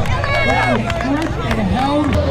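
Spectators at a BMX contest shouting and whooping, several voices rising and falling over one another, over a steady low hum.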